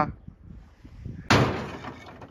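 Old clay roof tiles thrown into a tractor trailer, landing with one sudden crash and clatter just past a second in that fades over about half a second.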